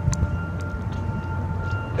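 Steady low outdoor rumble with a faint, steady high whine running through it, and a couple of light clicks.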